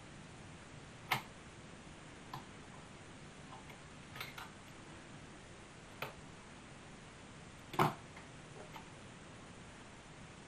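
Sparse small metallic clicks and taps, irregularly spaced, as a tiny self-tapping screw is fiddled into a tag-board mounting on a Marconi CR100 receiver's metal chassis with fingers and tweezers. The loudest click comes late on, over a faint steady hum.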